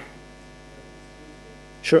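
Steady electrical mains hum, a low buzz made of many evenly spaced tones, with a single short spoken word just before the end.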